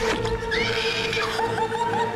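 A woman screaming in terror, a long quavering shriek that wavers up and down in pitch, starting about half a second in. Under it, a horror-film score holds a steady note after a sudden sharp musical hit at the start.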